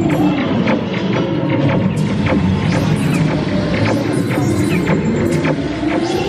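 Dark-ride soundtrack music with gliding electronic tones, overlaid by rapid short zaps and clicks, several a second. These are the laser-blaster shots and target hits as the score racks up.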